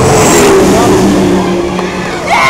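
Race ski boat running at full speed close by, the engine tone sagging slightly in pitch under a loud rush of water and spray.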